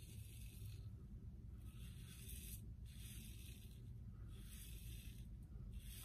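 Blackland Vector titanium single-edge razor scraping through lather and stubble in several short, faint strokes about a second apart.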